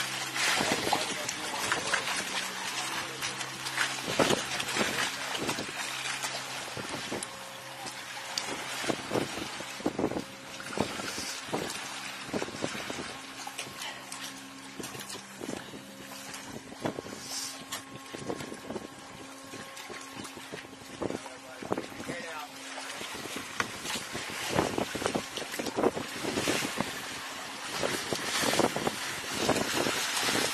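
Water splashing irregularly as a tiger shark thrashes at the surface alongside a boat. Under it runs a steady low engine hum that stops about 23 seconds in.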